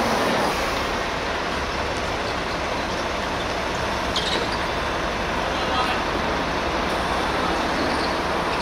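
Steady city traffic noise with faint voices of players on the court.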